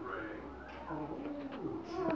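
A child's voice making low, wordless, drawn-out sounds, with the rumble of a phone being handled as a hand covers its microphone.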